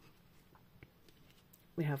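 Faint rustling and a few light ticks of a small stack of trading cards being handled, with a woman starting to speak near the end.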